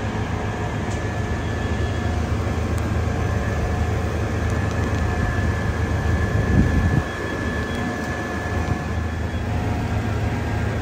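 Fire truck's diesel engine running steadily, a low rumble with a thin steady high whine over it; it swells briefly about six and a half seconds in and drops back suddenly at seven.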